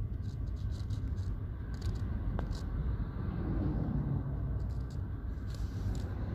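Steady low rumble of a moving car's road and engine noise, heard from inside the vehicle, with a few faint light ticks.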